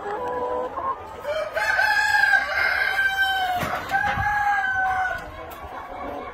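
Exhibition Rhode Island Red chickens in a pen: a rooster crows in long, drawn-out calls from about a second and a half in until about five seconds, broken briefly past the middle, over the hens' clucking. A brief knock sounds during the break.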